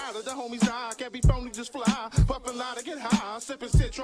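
Hip-hop track: a male rapper's vocals over a beat with deep bass kicks.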